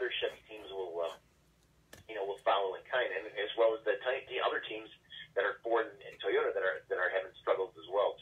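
Speech only: a man talking over a telephone line, the voice thin and narrow, with a short pause about a second in.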